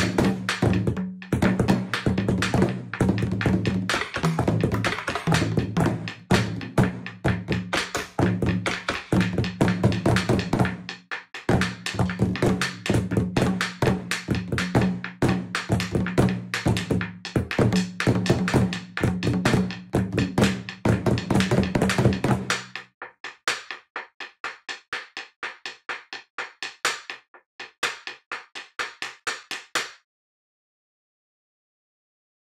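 Taiko drums struck with wooden bachi sticks by an ensemble, a fast, dense pattern of hits with deep drum tones. About 23 seconds in the full drumming stops and lighter, evenly spaced strikes carry on to the end.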